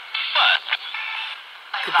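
Spirit box (ghost box) sweeping through radio stations: a short, thin, tinny burst of static and broken radio sound just after the start, trailing off into a fainter hiss.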